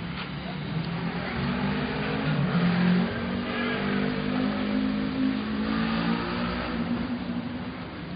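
A nearby motor vehicle's engine revving, its pitch rising and loudness peaking about three seconds in, then fading away.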